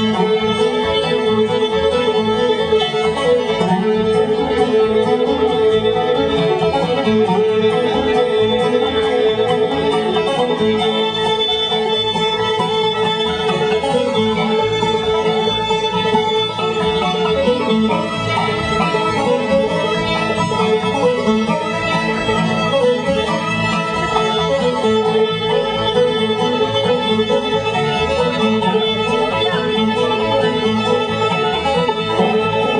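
Old-time string band playing a tune live at a steady, driving pace: fiddle, banjo and guitar together, without a break.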